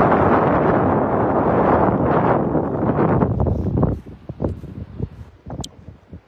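Strong wind buffeting a phone's microphone: a loud, low rumble for about four seconds that then drops away to faint, intermittent gusts.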